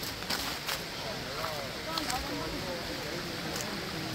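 Faint voices of people talking at a distance over a steady rushing hiss of a shallow stream.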